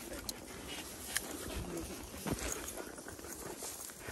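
Rustling of tall dry grass and footsteps on a dirt path as dogs nose through the undergrowth, with a few sharp clicks.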